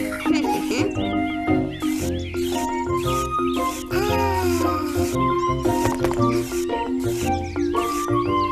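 Background music with a steady beat and held chords, with quick, high, squeaky sliding tones that rise and fall over it.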